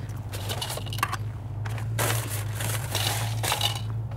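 Rustling, crinkling and scraping noises in several irregular bursts, over a steady low hum.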